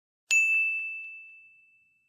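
A single bright metallic ding, struck once and ringing out, fading away over about a second and a half, with a couple of faint ticks just after the strike.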